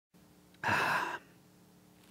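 A man's quick intake of breath into a close microphone, about half a second long, taken just before he speaks.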